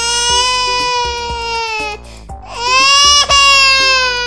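Two long, drawn-out crying wails over background music with a steady beat. The first wail ends about two seconds in and the second starts half a second later, each held at a high pitch and sagging slowly toward its end.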